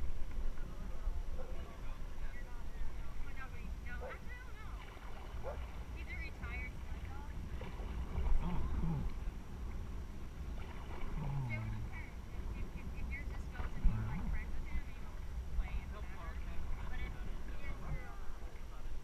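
Indistinct voices of people in a river raft, coming in short scattered snatches over a steady low rumble.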